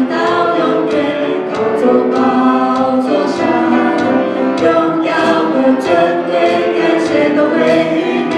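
A worship team of two women and a man singing a Chinese praise song together into microphones, amplified through the church sound system.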